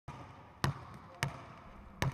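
Basketball dribbled on a hardwood gym floor: two sharp bounces a little over half a second apart.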